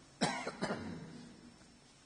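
A person coughing twice in quick succession, a moment after the start, the sound trailing off in the room.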